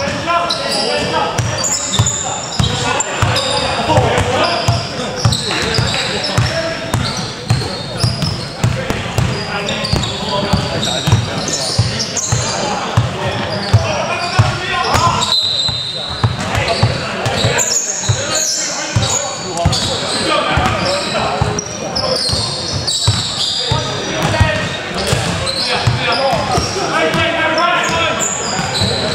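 Basketball being dribbled and bounced on a hardwood gym floor, a run of short thuds, under indistinct voices of players and bench calling out, all echoing in a large sports hall.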